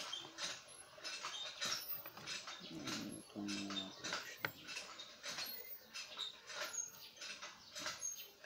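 Irregular light clicks and rustles of hands handling a mini amplifier's circuit board and wires, with a brief low pitched buzz about three and a half seconds in.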